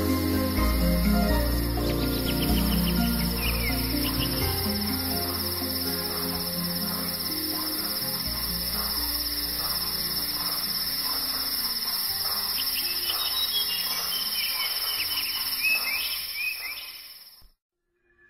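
Soft new-age background music with a steady cricket-like insect drone and scattered bird chirps mixed in. It all fades out shortly before the end.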